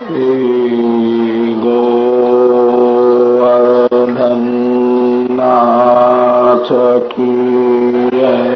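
Devotional chanting in a low male-range voice, drawn out in long held notes rather than spoken, stepping up in pitch about one and a half seconds in and again about five and a half seconds in, with brief breaks near the end.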